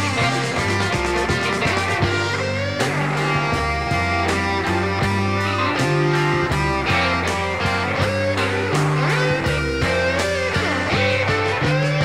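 Instrumental break in a late-1960s psychedelic blues-rock recording: electric guitar playing over bass guitar and drums, with bent guitar notes near the end.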